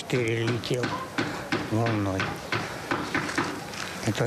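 A man speaking, with several sharp knocks behind his voice.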